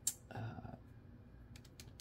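Faint small clicks and taps of hands handling watercolour supplies at a paint palette, with a short hiss right at the start.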